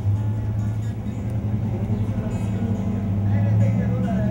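A man singing a lullaby, holding one long low note.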